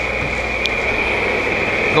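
Covel 512H cylindrical grinder running with no work on it: a steady high-pitched whine over a low hum, with one light click about two-thirds of a second in.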